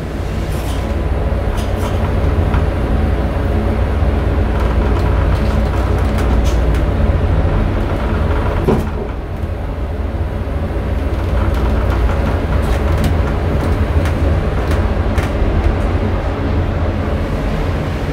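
Traction elevator heard from inside the car: a steady low rumble and hum with scattered light clicks and rattles, and a single knock about nine seconds in.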